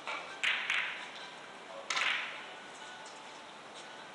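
Carom billiard balls clicking on neighbouring tables in a large, echoing hall: several sharp knocks, one right at the start, two about half a second apart just after, and one about two seconds in.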